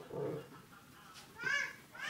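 A short high-pitched cry, rising in pitch, about one and a half seconds in, against an otherwise quiet background.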